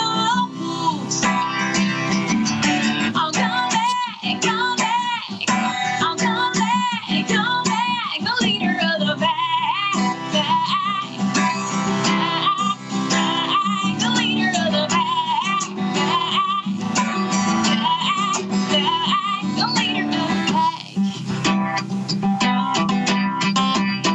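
A woman singing with a wavering vibrato over her own strummed acoustic guitar. The sound has a thin, band-limited quality from coming over a Skype video call.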